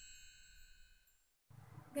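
The last ringing chime tones of an intro jingle fading out and stopping a little over a second in, then a moment of dead silence and faint room noise before a woman starts to speak.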